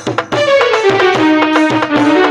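Instrumental interlude of a live Indian devotional song: an electronic keyboard plays a melody that steps down to a held lower note over a steady tabla rhythm. It follows a brief drop in the music at the very start.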